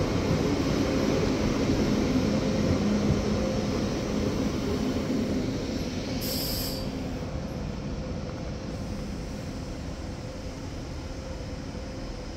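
Passenger coaches of an express train rolling past as the train pulls into the station and slows, with a faint steady hum. The sound slowly fades as the end of the train goes by, with a short hiss about six seconds in.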